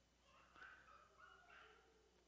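Near silence: room tone in a pause of speech, with a few faint, brief high-pitched sounds from about half a second in to near the end.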